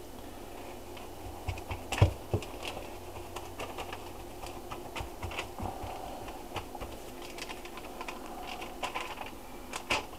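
Kitchen handling noise: irregular light clicks and taps as a plastic olive-oil bottle is handled and a paper towel is dabbed and rubbed over a pork loin on paper, the loudest click about two seconds in. A steady low hum runs underneath.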